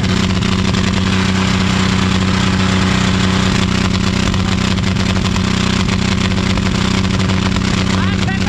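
John Deere 5039 D tractor's three-cylinder diesel engine held at full throttle while standing still, running steadily at high revs with no change in pitch.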